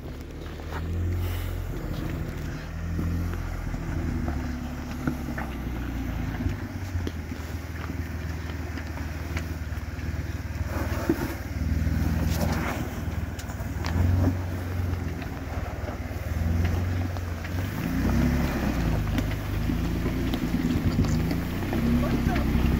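An off-road Jeep's engine working through a rock obstacle, its low note swelling and easing off as the throttle comes on and off. There are a couple of short knocks about halfway through.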